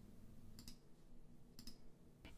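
Near silence with two faint computer mouse clicks about a second apart, picking a colour from a right-click menu.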